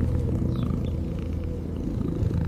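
A lioness's low, steady, rumbling purr.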